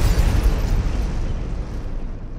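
Cinematic explosion sound effect: the deep rumbling tail of a boom that hit just before, fading slowly.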